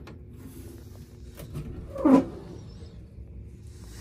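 A small key turning in the lock of a metal fire alarm control panel cabinet, with a few light clicks as the latch and door are worked, over a steady low hum. About two seconds in there is one short, loud, voice-like sound that falls in pitch.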